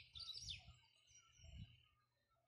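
Faint songbird chirps: a quick run of high chirps with a falling note in the first half-second, then a thin steady high note held until near the end.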